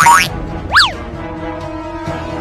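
Comedy sound effects over background music: a loud sliding tone sweeps down at the start, and a quick tone rises and drops back about a second in, while the steady music carries on underneath.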